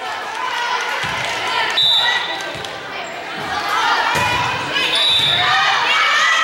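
A volleyball bouncing several times on a hardwood gym floor, with players' voices calling out.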